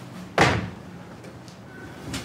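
A single sudden heavy thud, like a slam, about half a second in, dying away within half a second.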